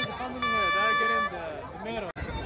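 People talking in an outdoor crowd, with a steady held note of several tones sounding for about a second, starting about half a second in.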